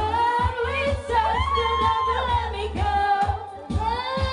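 Women singing in turn into handheld microphones over a pop backing track with a steady bass beat, the voices amplified; the singing dips briefly shortly before the end, then resumes.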